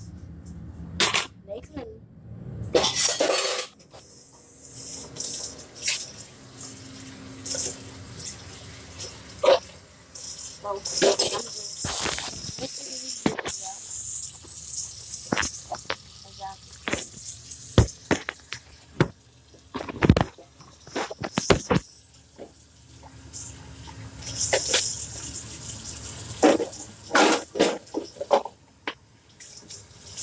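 Kitchen tap running while dishes are rinsed in the sink, with irregular clatters and knocks of dishes against each other and the sink.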